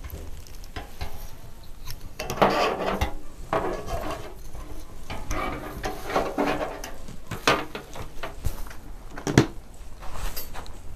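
Dry statice stems crackling and rustling as wire is wrapped tightly round a bunch on a metal wire wreath frame, with small irregular clicks of wire and frame, and one sharp click near the end.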